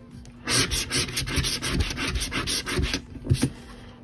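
A coin scratching the coating off the winning-numbers area of a scratch-off lottery ticket, in quick back-and-forth scrapes. The scraping stops about three seconds in and is followed by a couple of single short scrapes.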